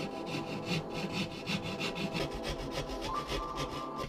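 A hand knife sawing through gypsum plasterboard in quick, even back-and-forth scraping strokes.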